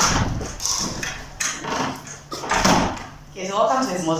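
Indistinct voices of people talking, with a low rumble of movement at the start and one voice clearer near the end.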